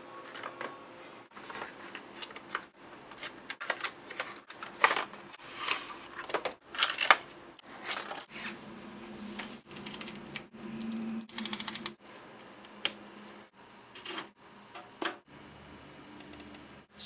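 Handling of a speaker's plastic packaging: irregular crackles, clicks and taps of a clear plastic clamshell being turned over in the hands, with a few sharper loud clicks.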